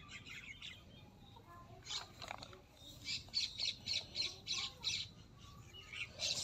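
Birds calling: a couple of short calls about two seconds in, then a quick run of high chirps, about five a second, lasting roughly two seconds.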